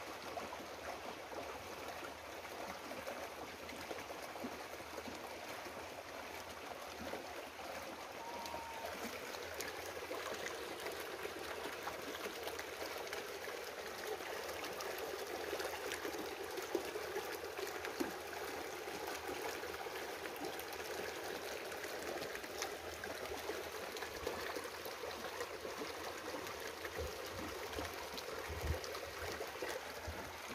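Steady rushing background noise, like running water, with a brief faint chirp about eight seconds in and a few faint clicks later.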